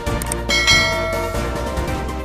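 Background music with a bell-like ding sound effect about half a second in, ringing out and fading over about a second.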